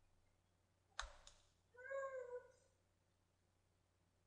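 Two quick clicks about a second in, then a single short, high-pitched meow from a cat.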